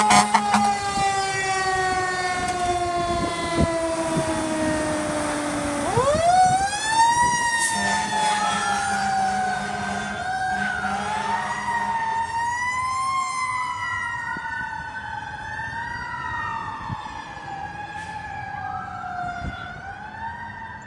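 Fire engine siren. For the first six seconds its pitch falls slowly and steadily. About six seconds in a wailing siren starts, rising and falling over and over and growing fainter as the engine moves away.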